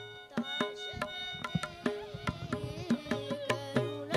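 Carnatic music: a mridangam played in a steady rhythm of strokes under a violin, which holds notes and then slides through ornamented, gliding phrases about halfway through.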